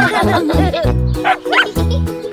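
Children's song backing music with a cartoon puppy barking and yipping over it, two short rising yips in the second half.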